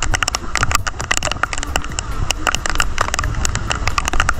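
Rain falling, heard as a dense run of irregular sharp clicks and crackles over a low rumble.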